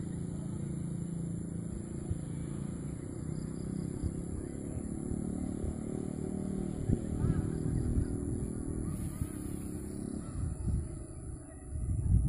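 A vehicle engine running steadily, with gusts of wind buffeting the microphone, strongest about seven seconds in.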